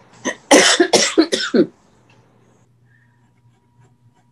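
A person coughing: a short hack just after the start, then a quick run of about four coughs over a little more than a second.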